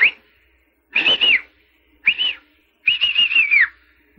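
Tinny, squeaky voice from a telephone earpiece: the caller's words come through as unintelligible high-pitched chirps in three short bursts, the last one longer and wavering like a run of syllables.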